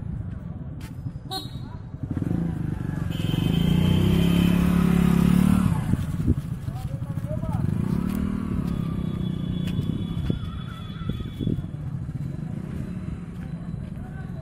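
A motorcycle engine running and passing close by, loudest from about three to six seconds in, with people's voices talking in the background.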